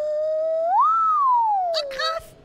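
A carved wooden nose flute, blown through the nose with the pitch shaped by the mouth, plays one pure whistle-like note. The note holds steady, swoops up about an octave around a second in, then slides slowly back down a little below where it started.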